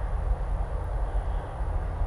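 Steady low rumble with a fainter hiss of water: the reef aquarium's pumps and circulating water.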